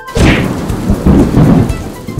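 Thunder sound effect: a sudden loud crack just after the start, followed by a heavy rolling rumble that eases off near the end.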